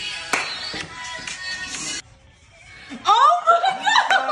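Background music with steady held tones that cuts off abruptly about halfway through. After a short hush, loud laughter and excited voices break out about three seconds in.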